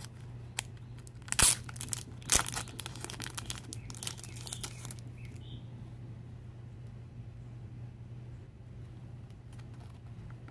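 Clear plastic wrapping on a pack of photo cards being torn open and crinkled, with two sharp cracks about a second and a half and two and a half seconds in. The crackling stops about five seconds in.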